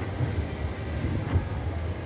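Steady low rumble of outdoor ambience picked up by a handheld camera while walking, with one faint short tick about one and a half seconds in.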